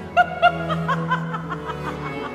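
A singer's voice laughing in short, quick pitched bursts, about four a second, over a held low instrumental note in a baroque opera.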